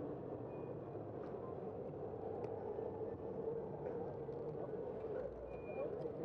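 Steady city street noise heard from a moving bicycle: a constant rumble of traffic and road noise, with a few faint brief squeaks and clicks.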